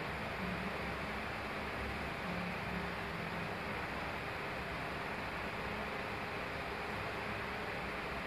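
Steady hiss and low hum of room tone, with a wall-mounted split air conditioner running; no other event stands out.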